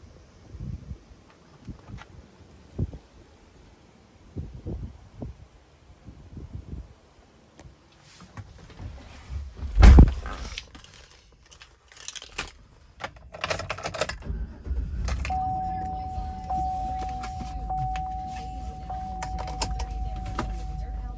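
2012 Chevrolet Silverado Z71 engine started from inside the cab, about two-thirds of the way through, then idling steadily, with a warning chime repeating about once a second over the idle. Before that there are scattered light knocks, and a loud thump about halfway through.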